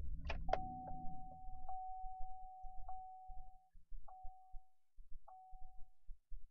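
A 2011 Chevy Silverado's 5.3-litre V8 is cranked and fires, its low rumble loud for about a second and a half and then settling to a quieter idle. Over it a single-pitch warning chime dings repeatedly, about once a second.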